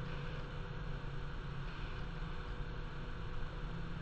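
Steady low hum with a constant hiss over it, with no distinct event.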